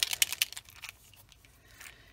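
A quick run of small clicks and rattles, lasting about a second, as a small plastic alcohol ink dropper bottle is picked up and handled.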